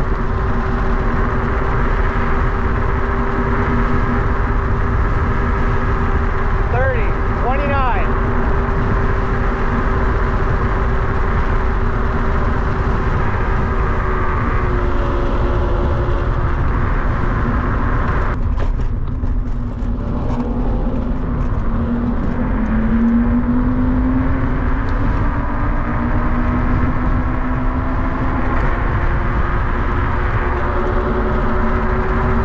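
A 48 V electric scooter riding along a road: wind rushing over the camera microphone and tyre rumble, with a steady electric motor whine whose pitch shifts with speed and rises a little past the middle.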